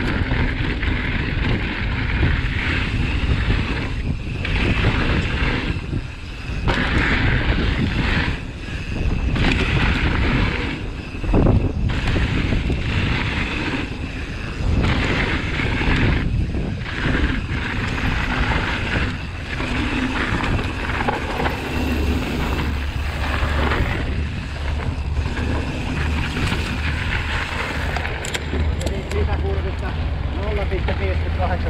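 Mountain bike ridden fast over dirt trail: continuous tyre rumble on dirt and wind buffeting the microphone, dropping away briefly several times, with a steadier low rumble in the last few seconds.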